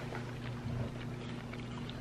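A steady low hum, with faint small clicks and a soft mouth sound from eating a spoonful of soup.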